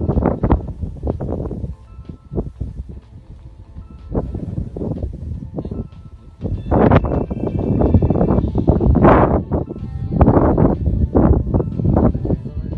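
Male lions snarling and growling in a fight, in loud irregular bursts, the longest from about six to nine and a half seconds in. Background music with steady held notes plays underneath.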